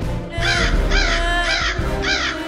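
Crows cawing: three harsh caws about half a second apart, starting about half a second in, over background music.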